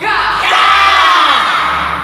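A group of young karate students shouting a kiai together: one long shout of many voices, falling in pitch and dying away near the end.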